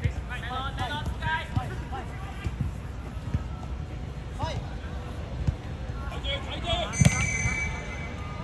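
Players shouting on a football pitch, with scattered thuds of the ball being kicked. About seven seconds in comes one loud, sharp kick as a shot is struck at goal.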